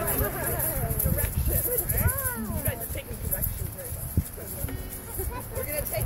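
Several children and adults talking and calling out over one another, with a few soft knocks and thumps.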